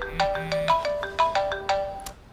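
Mobile phone ringtone playing a quick melody of short notes, about six a second.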